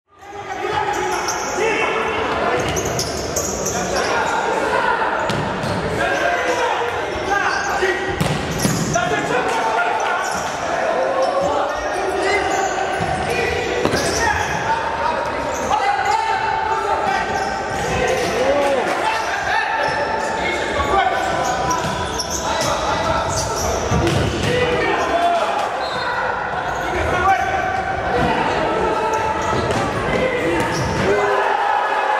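Futsal ball being kicked and bouncing on the floor of a large sports hall, with players' voices calling throughout.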